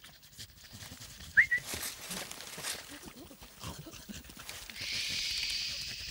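A pack of cartoon dogs making a busy jumble of small animal noises, with a short high squeak about a second and a half in. Near the end a long 'shhh' hush comes over them.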